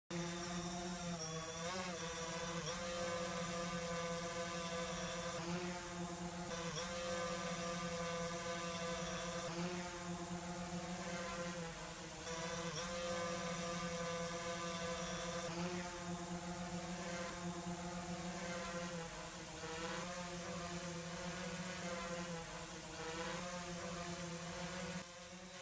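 Steady hum of a multirotor drone's propeller motors, one constant pitch with small wavers.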